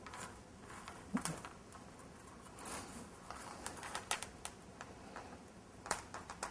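Light clicks and rustles of beaded metal craft wire being twisted by hand, with small beads ticking against each other and the wire. The clicks are irregular, a few sharper ticks standing out.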